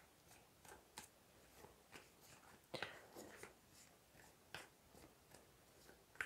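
Faint, scattered soft clicks and rustles of a tarot deck being handled and shuffled in the hands, the clearest about three seconds in.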